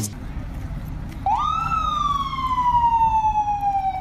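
An emergency vehicle siren over a low rumble of street noise. About a second in, its pitch rises quickly, then slides slowly and steadily down.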